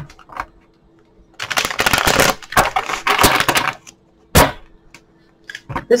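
A deck of tarot cards being shuffled by hand: two stretches of rapid card flutter, each about a second long, starting about a second and a half in, then a single sharp tap a little over four seconds in.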